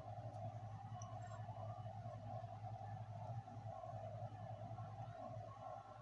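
Faint steady hum with a higher droning band above it, unbroken and without distinct events: room tone.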